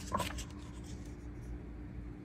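A comic book's paper page being turned and smoothed flat by hand, a short crackly rustle in the first half second. After it only quiet room tone with a faint steady hum.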